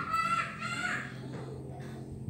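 Baby macaque giving a high, drawn-out call that ends about a second in.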